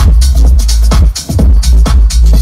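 Loud techno from a DJ set played over a large PA system, with heavy bass and a steady beat about twice a second.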